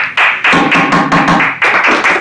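A small group of people applauding, with quick, closely spaced hand claps.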